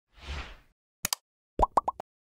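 Animated-intro sound effects. A soft whoosh comes first, then a quick double click about a second in, then three rapid pops that rise in pitch.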